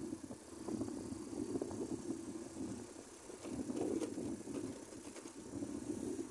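Motorcycle engine running while riding, heard from the rider's position with road and wind noise; the level swells and dips.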